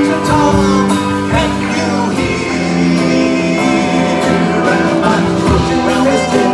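Live folk-rock band playing: acoustic and electric guitars, bass guitar, drum kit and hand drums, and violin, with singing over the top.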